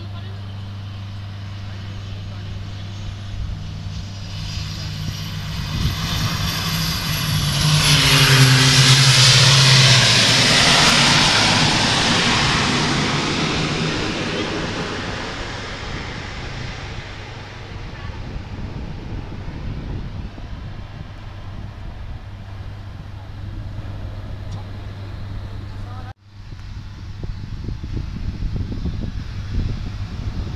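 A Jetstream 41 twin turboprop lands and passes close by. It swells to its loudest about a third of the way in, its propeller drone dropping in pitch as it goes past, then fades as it rolls away down the runway. The sound cuts out briefly near the end, and a steady low hum runs underneath.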